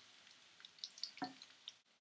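Faint sizzling of coated chicken cubes shallow-frying in oil in a pan, with scattered small crackles and pops. The sound cuts out briefly near the end.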